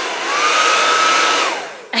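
Handheld hair dryer blowing: a loud rush of air with a motor whine that climbs and holds steady, then runs down and stops about a second and a half in.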